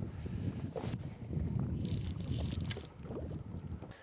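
Wind buffeting the microphone out on open, choppy lake water: an uneven low rumble, with a short crackling hiss about two seconds in.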